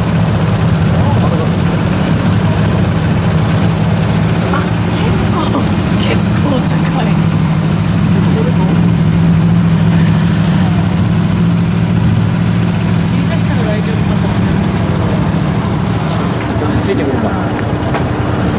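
Vespa 946 scooter's single-cylinder engine idling steadily while the scooter stands still, then shut off about 16 seconds in.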